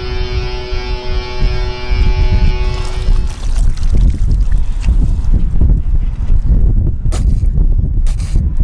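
Music with long held chords that stops about three seconds in. It gives way to sports drink splashing as a bottle is poured over a man's head, over a low wind rumble.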